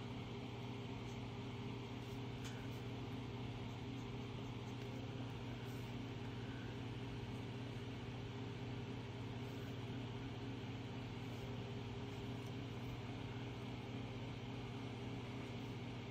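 A steady low machine hum that does not change, with a few very faint ticks over it.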